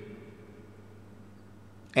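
Reverb tail of a man's voice dying away after a spoken phrase, from the USB condenser microphone's built-in reverb effect at its highest setting, level 3. It fades over about half a second into a faint steady low hum.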